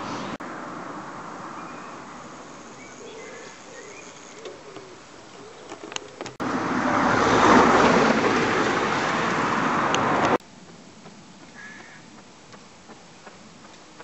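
A car passing close by, its tyre and engine noise a loud rush that rises to a peak and cuts off suddenly, in between quieter stretches of roadside background with a few faint bird calls.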